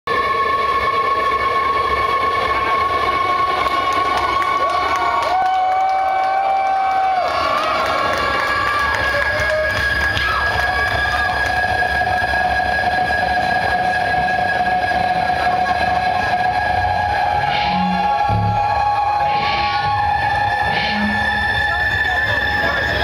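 Long, held droning tones from the stage sound system over a cheering crowd, with a few low thuds near the end.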